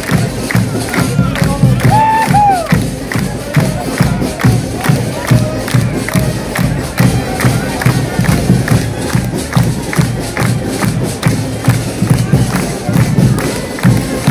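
Crowd clapping hands in a steady rhythm, about three to four claps a second, over music, with cheering; a shout rises and falls about two seconds in.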